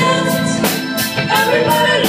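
Live band music with female voices singing over electric guitar and drums, recorded in the room. A steady drum beat runs under the vocal line.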